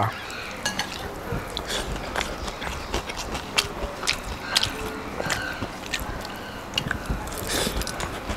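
A person chewing food close to the microphone, with many small irregular mouth clicks and smacks, while eating rice with the fingers from a plate.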